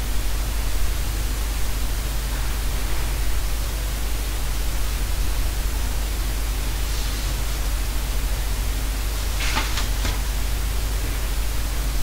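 Steady hiss of a recording's noise floor with a low hum underneath, unbroken through a pause in the narration, with a couple of faint brief sounds in the second half.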